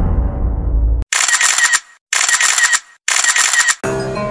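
Intro sound effects: a deep boom fades out over the first second, then the same sharp, rapid clicking effect plays three times, about a second apart.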